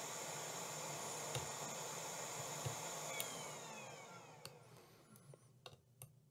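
A small electric fan or blower runs with a steady hiss and a thin high whine, then winds down and fades out about four to five seconds in. A few faint ticks come through on top of it.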